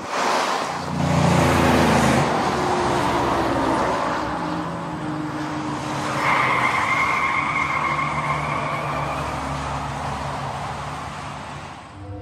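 Car sound effect: an engine running with tyre noise, then a steady high tyre squeal from about six seconds in that lasts a few seconds, and the whole fades out near the end.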